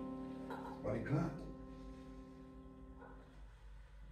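The closing chord of the song on a Yamaha Motif XS6 keyboard, played with a piano sound, rings on and fades away over about three seconds. A brief voice sounds over it about a second in.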